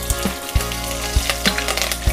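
Green chillies, cashews and dal sizzling in hot oil in a pan, with light spatula stirring, over background music with a steady low beat.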